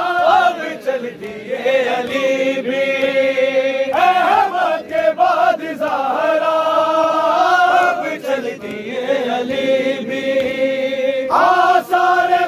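A crowd of men chanting an Urdu noha (Shia lament) in unison behind a lead reciter, holding long notes of a few seconds each with short breaks between lines. A few sharp slaps cut through, hands striking chests in matam.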